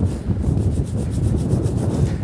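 Bristle spoke brush scrubbing between the wire spokes of a chrome motorcycle wheel in quick, repeated back-and-forth strokes, working loose brake dust.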